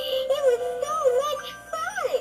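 Holly the recipe bear, a Sound N Light animated plush toy, playing its song: a high voice singing a melody of held and gliding notes.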